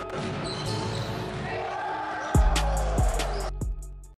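A basketball bouncing on a hardwood gym floor: three heavy bounces about two-thirds of a second apart in the second half, over the general noise of the gym.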